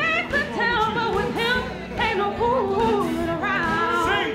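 A woman singing a musical-theatre number into a microphone over musical accompaniment, her voice sliding between notes.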